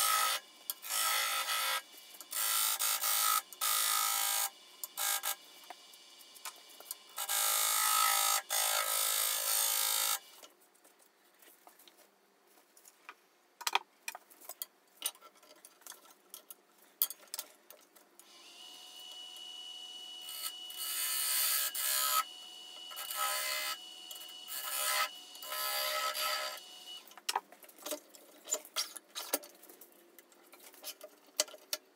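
A bowl gouge cutting the outside of a spinning spalted beech bowl on a lathe: a run of short scraping cuts for the first ten seconds, then a quieter stretch. From about halfway a steady whine sets in under more bursts of cutting, and scattered clicks come near the end.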